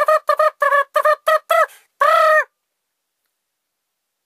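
A tune for guessing, played as a quick run of short, squawky pitched notes, about four or five a second, ending on one longer held note about two seconds in.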